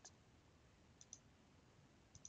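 Near silence with faint computer mouse clicks: a single click at the start and a quick double click about a second in.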